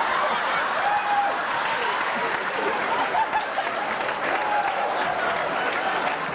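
Large audience applauding after a punchline, a dense steady clapping with voices from the crowd mixed in.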